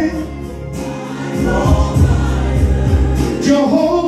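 Gospel worship song: a man singing into a handheld microphone over music with a sustained bass line and choir voices. The voice drops back early on and comes in stronger near the end.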